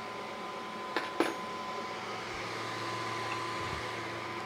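Two sharp clicks about a second in, a fifth of a second apart, from a small chrome-plated wrench being handled, over a steady room hum with a faint high whine.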